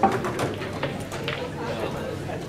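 Indistinct background chatter of many people in a large hall, with a sharp click right at the start and a few fainter clicks after it.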